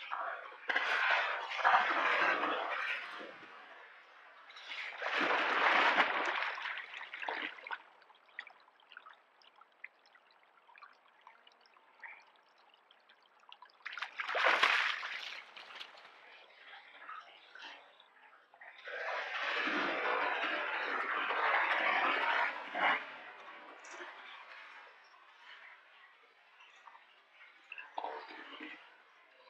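An American black bear splashing in a shallow creek. There are four bursts of splashing: the first about a second in, the next around five seconds, a short sharp one near the middle and the longest a few seconds later. Between the bursts only quieter water and rustling is heard.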